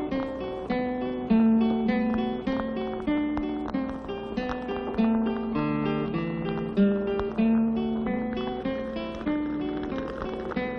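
Acoustic guitar music: a run of plucked notes, each struck sharply and left to fade, several a second.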